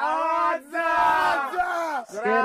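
Several people yelling together in two long drawn-out cries, the second longer and falling in pitch at its end.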